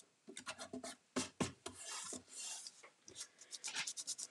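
Hands rubbing and pressing a paint inlay sheet against a painted wooden box: a run of short scratchy rubs broken by small light knocks.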